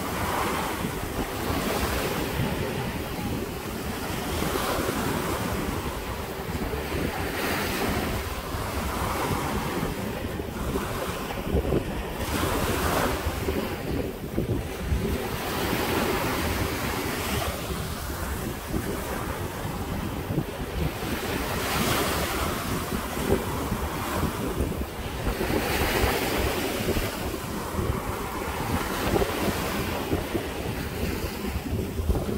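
Small ocean waves breaking and washing against a rocky shore of boulders, the surf swelling and easing every few seconds, with wind rumbling on the microphone.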